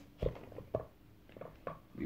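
A few light, sharp knocks and clicks as the Diamond Select Mummy sarcophagus figure case is handled and gripped to open its lid, about four in two seconds.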